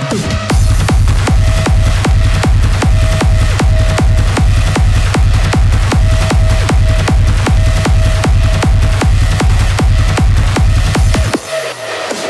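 Hardstyle dance music with a distorted kick drum on every beat at a fast, steady tempo, each kick ending in a falling pitched tail. The kick drops out near the end.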